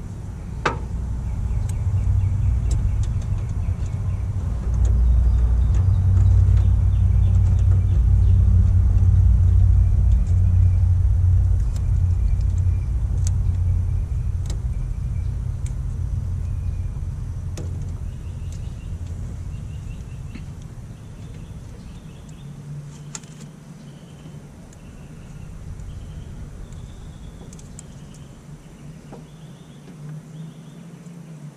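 Low rumble of a motor vehicle that builds in the first couple of seconds, holds for about ten seconds, then slowly fades away. Faint high chirps and a few small clicks run over it.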